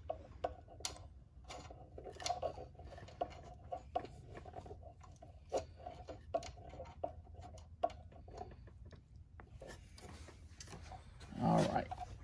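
Scattered light clicks and taps from hands adjusting the depth stop on a DeWalt sliding miter saw, over a faint steady hum. A brief louder sound comes near the end.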